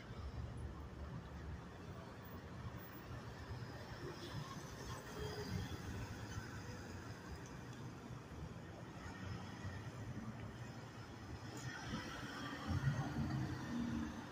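Faint, steady low rumble of vehicle engines in a parking lot, growing louder near the end as a car drives past close by.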